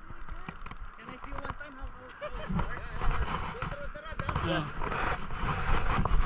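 Indistinct voices of people talking over steady outdoor background noise.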